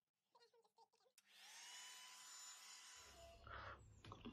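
Revlon One-Step hair dryer brush running faintly: its motor whine rises and then holds over the blowing hiss from about a second in, and stops about three seconds in.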